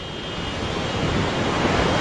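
Tsunami backwash pouring out across a flooded bay: a steady rush of churning water that grows louder over the two seconds.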